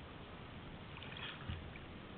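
Faint, steady outdoor background noise, with a short, soft low bump about one and a half seconds in.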